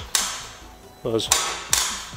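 Two sharp knocks, one just after the start and one near the end, each fading out slowly in the room's echo, with a brief vocal sound between them.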